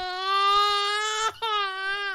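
A baby crying, from a recorded sound effect played back on a computer. One long wail, a short catch a little over a second in, then a second wail that falls in pitch as it ends.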